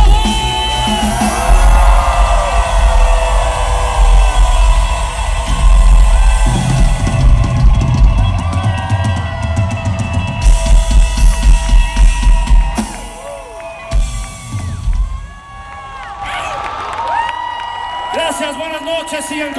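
Electronic pop band playing live, with a heavy kick drum and drums under synth lines. A run of quick, evenly spaced drum hits about ten seconds in ends the song. The music stops about thirteen seconds in, leaving quieter crowd noise.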